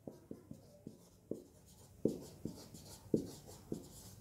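Marker pen writing on a whiteboard: a run of about a dozen short, faint strokes and taps as words are written.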